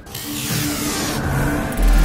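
Cinematic logo-sting sound effects: a swelling whoosh over low droning tones, then a deep boom near the end.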